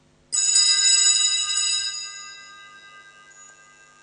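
A cluster of small altar bells (Sanctus bells) shaken for about a second and a half, then ringing away. It is the bell that marks the elevation of the consecrated host.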